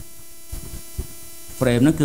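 Steady electrical hum in the recording, with a single short click about a second in.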